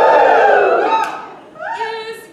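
A loud, high-pitched, drawn-out theatrical cry in a woman's voice, held for just over a second and then fading.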